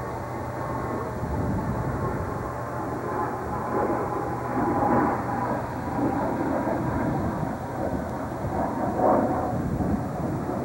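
A vehicle running steadily, heard from on board, with a low hum that fades out about seven seconds in.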